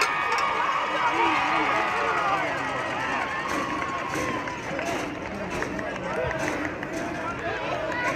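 Football stadium crowd in the bleachers chattering, many voices overlapping at a steady level.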